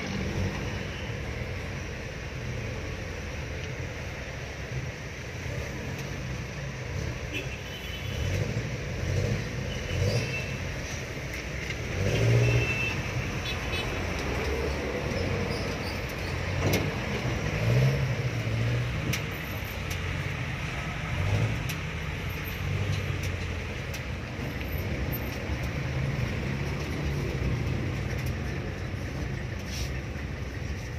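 Jeepney engine running, heard from inside the open passenger cabin, with road traffic around it; the sound swells a few times, loudest about twelve seconds in.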